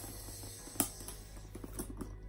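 Light clicks and handling of a handbag's leather shoulder strap and its metal clasp being fitted to the bag, with one sharp click a little under a second in and a few smaller ones near the end.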